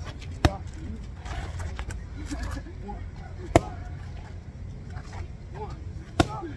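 Boxing gloves striking hand-held focus mitts: two sharp slaps, about three seconds apart, the first about half a second in.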